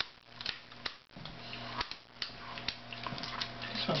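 Scattered small, irregular clicks and crackles from lighters being worked and the mass of burning candles on a birthday cake, over a faint steady hum.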